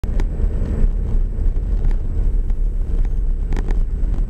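Vehicle interior noise while driving: a steady low engine and road rumble, with a few short knocks or rattles, most of them near the end.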